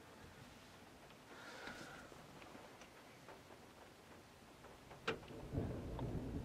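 A quiet stretch with a few faint scattered ticks. About five seconds in there is a sharp click, then a low rumble of thunder starts to build.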